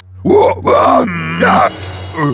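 A cartoon character's voice making several short wordless cries that rise and fall in pitch, one held longer in the middle, over a steady low drone.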